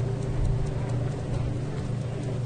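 A steady, low, engine-like droning hum with faint, regular ticking above it.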